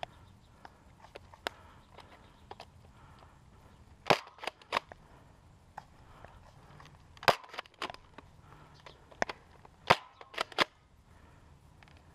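Nerf foam blasters firing: sharp pops in three quick bursts of two to four shots, about four seconds in, about seven seconds in and near ten seconds, with fainter single clicks between.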